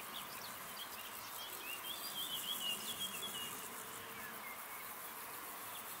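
Meadow insects stridulating: a steady, fast, high-pitched pulsing chirr. A short warbling call sits over it from about one and a half to three and a half seconds in.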